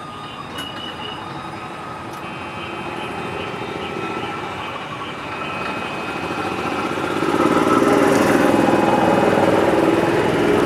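A motor running and drawing nearer, growing steadily louder and loudest over the last few seconds.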